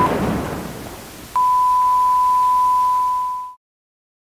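A loud burst of noise fades away, with a brief beep at the start. Then a steady, high single-pitched electronic beep tone sounds for about two seconds and cuts off suddenly into silence.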